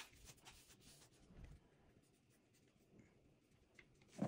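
Near silence, with faint rubbing and scratching of hands smoothing kinesiology tape down onto the skin of a foot, and a few light clicks in the first second.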